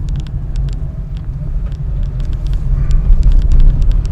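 Car cabin on a wet road: a steady low rumble of the car's engine and tyres, with many scattered sharp clicks and knocks on top, growing louder near the end.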